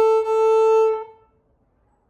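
Viola bowed on the open A string, one steady note in a descending D major scale played two strokes per note, with a bow change about a quarter second in. The note stops about a second in.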